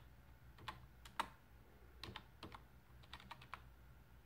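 Computer keyboard keys tapped one at a time: about a dozen faint, irregularly spaced clicks as a short command is typed.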